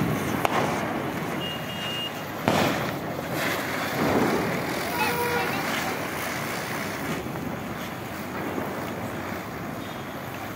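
Ground firework fountains burning, a steady hissing rush of spraying sparks, with a few sudden pops, the sharpest about two and a half seconds in.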